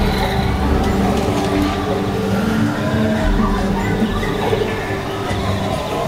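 A dark indoor boat ride's ambient soundtrack: held, music-like tones over a steady low rumble.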